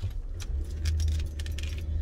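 Low steady rumble of the car's engine and road noise inside the cabin, growing stronger about half a second in. Over it there is a light jingling rattle lasting about a second and a half.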